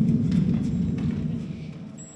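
A pit band's last low notes fading out in a theatre after a musical number, with a few faint knocks.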